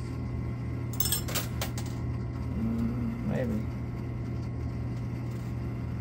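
Quarters clinking in a coin pusher arcade machine: a quick run of sharp metallic clinks about a second in, over a steady low hum.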